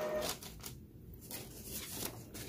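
A sheet of paper and a cotton shirt being handled on a heat press platen: faint rustling, in short bursts with a brief quiet gap in the middle.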